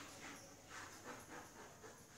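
Faint chalk strokes scratching on a blackboard as a word is written, several short scrapes in quick succession.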